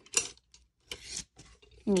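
Tools and pens clinking and rattling inside a stainless steel canister as a hand rummages through them: a few short clicks and a brief scraping rattle about a second in.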